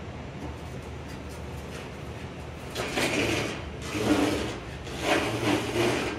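Rusted sheet metal from a steam locomotive's ash pan scraping across the shop floor in three rough drags, about a second apart, in the second half.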